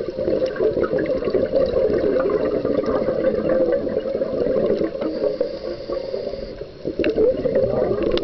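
Bubbles from a scuba diver's regulator rushing and gurgling underwater as the diver breathes out in a long exhalation. The bubbling breaks off briefly near the end, then starts again with the next breath.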